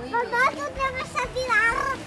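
A young child speaking in a high voice, in several short phrases.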